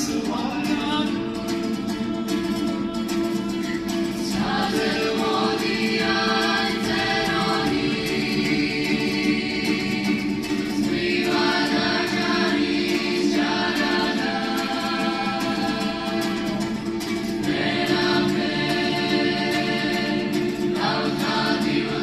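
Mixed choir of women's and men's voices singing a Georgian song in harmony, in long held phrases.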